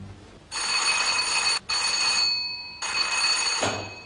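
Electric doorbell ringing in three bursts, the first two close together and the third after a short pause.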